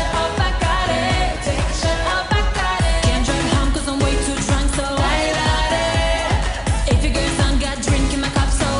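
Pop song played loud: a woman singing over a steady dance beat.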